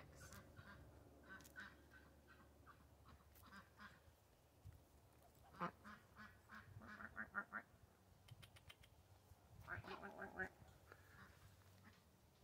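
Small flock of white domestic drakes giving soft, quiet quacks in three short runs of quick calls. These are the low calls typical of male ducks, unlike the loud quack of a female.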